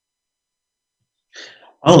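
Dead silence for over a second, then a man's quick, sharp intake of breath just before he starts to speak.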